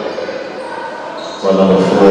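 Echoing gymnasium sound during a basketball game: a basketball bouncing on the hardwood floor under voices. Loud voices come in suddenly about one and a half seconds in.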